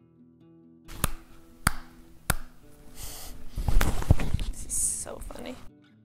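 A clip-on lavalier microphone is tapped three times, sharply, a little over half a second apart. It is then rubbed and knocked for a couple of seconds with a rustling, scraping noise, and this cuts off suddenly near the end. Soft background music plays underneath.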